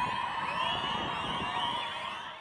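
Crowd of spectators cheering, many high voices whooping over one another.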